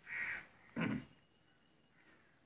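A crow cawing twice in quick succession, two short calls within the first second.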